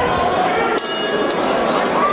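Arena crowd shouting and talking around the cage, with a short metallic clink just under a second in.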